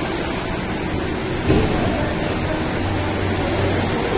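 Steady rushing roar inside a road tunnel with a low hum underneath, and a brief louder bump about one and a half seconds in.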